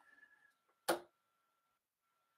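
A steel-tip dart striking a Winmau Blade 5 bristle dartboard: a single short, sharp thud about a second in.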